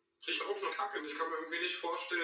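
Speech only: a man talking at moderate level, as played back from a video.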